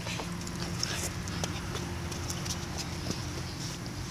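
Faint, irregular taps and scrapes of hands scooping and packing sand into a plastic bucket, over a low steady rumble.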